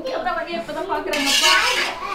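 A metal spoon stirring and scraping in a steel cooking pot, with a harsher scrape about a second in.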